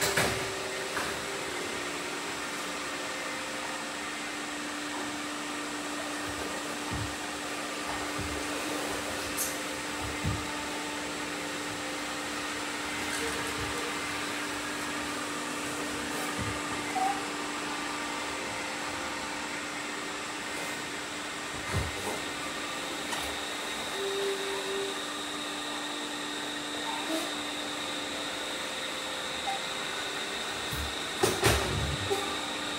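Robot vacuum cleaners running: a steady whirring hum with a low, even tone, broken by a few short knocks.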